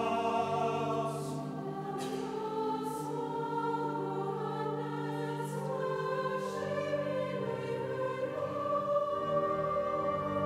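Choral music: a choir singing slow, long-held chords.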